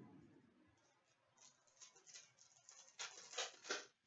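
Trading cards being handled and sorted by hand, with faint scratchy rustles and light clicks of card on card. They start about a second and a half in and are loudest in the last second.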